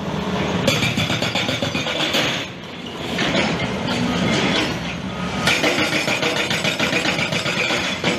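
Heavy quarry machinery running: a continuous, loud, noisy mechanical din that dips briefly about two and a half seconds in and again around five seconds, then runs louder.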